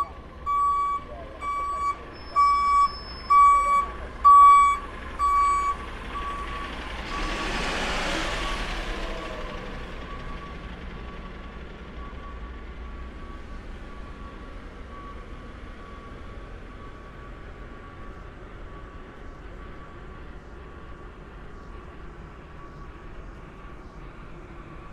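Refuse truck's reversing alarm beeping at an even pace, a little more than one beep a second, getting louder and stopping about six seconds in. A vehicle then passes, leaving a steady low hum of traffic.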